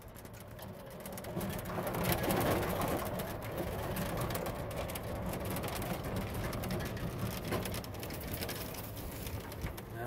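Battery-powered golf cart driving over rough farm ground: a steady rumble with fine rattling. It grows louder about two seconds in.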